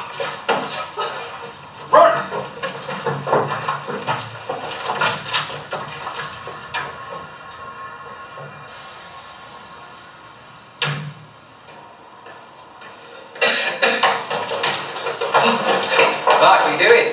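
A film's soundtrack playing over classroom loudspeakers. It has irregular knocks and scuffling sounds, a quieter stretch in the middle, a sharp click about eleven seconds in, and louder, denser noise near the end.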